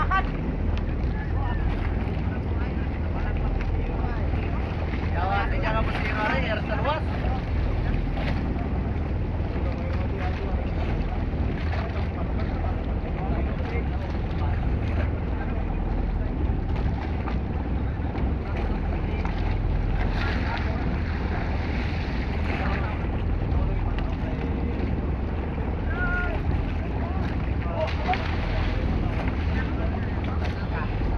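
Steady low rumble of wind on the microphone over open sea, with water washing against the outrigger boat's hull. Distant voices call out a few times, around six seconds in and again in the second half.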